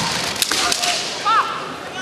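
Bamboo shinai striking each other, with a sharp crack right at the start and another about half a second in, then a short, high-pitched kiai shout from one of the fencers, over the steady murmur of an arena crowd.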